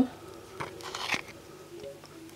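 A very thick white filler-and-glue mixture being stirred with a plastic stick in a plastic bowl: soft squelching with short scrapes, the sharpest about a second in.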